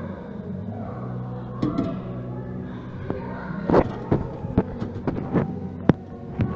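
Irregular light taps and knocks from a loose piece at an HVAC intake louver flapping in the inrushing cold air, over a steady low hum. The piece is, as the owner guesses, one that should be tied down and is not.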